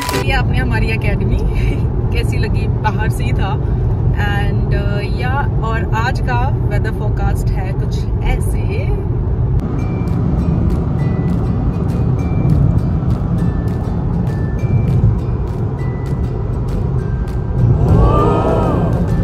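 Steady low rumble of road and engine noise inside a car travelling at motorway speed, with music playing over it. A voice is heard over roughly the first half.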